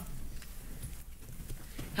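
A few faint knocks over quiet room tone.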